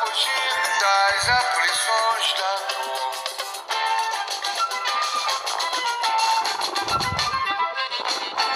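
Music: a song's melodic lead line with accompaniment, thin and lacking bass.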